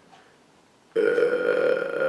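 A person burping: one long, loud burp that starts abruptly about a second in and holds a steady pitch.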